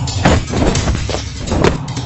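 Music under a noisy rush of fight sound effects, with three sharp impact hits: punches landing in an animated brawl.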